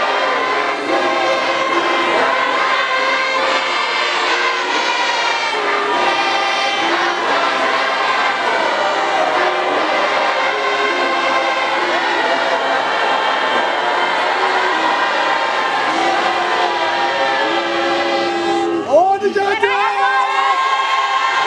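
A large congregation singing a hymn in many-voiced harmony, with no instruments heard, holding chords that shift every second or so. About a second before the end, a single voice slides briefly upward over the singing.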